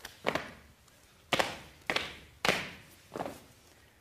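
A series of five sharp thuds and taps at uneven intervals, each dying away quickly, accompanying performers crab-walking on a studio floor.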